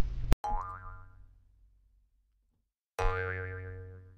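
A cartoon "boing" sound effect, heard twice: once just after a sharp click near the start and again about three seconds in. Each has a wobbling pitch and fades out over about a second and a half.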